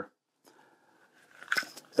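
Hard plastic holsters handled on a tabletop: a faint rustle, then a couple of sharp clicks and taps about a second and a half in.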